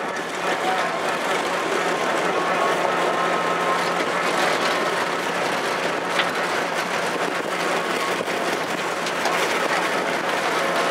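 Steady running noise of a vehicle keeping pace with a harness race on a dirt track, mixed with the trotting horses and their sulkies close by.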